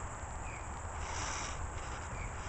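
Quiet outdoor ambience: a steady low rumble with a faint high insect-like buzz that swells briefly about a second in, and a couple of faint short chirps.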